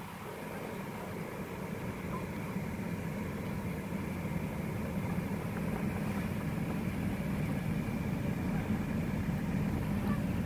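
Car engine idling, heard from inside the cabin: a steady low rumble that grows slowly louder.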